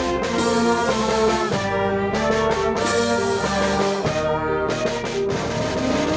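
A mixed band playing together: saxophones, trumpet, clarinet, flute, violin, electric guitar, bass guitar and drum kit, with held brass and wind notes. A cymbal crashes twice, about half a second in and again near three seconds, each ringing on.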